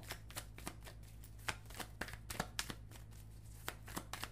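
A pocket-size tarot deck being shuffled by hand: a run of quick, irregular card clicks and flicks as the cards slide against each other before one is drawn.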